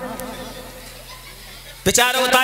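A low, steady electrical hum from a sound system during a pause in a man's amplified speech. His voice trails off at the start and comes back abruptly near the end with a sudden loud onset.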